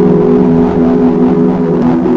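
Background music: a held, steady chord of sustained tones, shifting slightly near the end.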